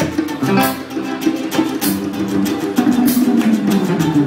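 Live instrumental band music: an acoustic guitar played over regular percussion hits.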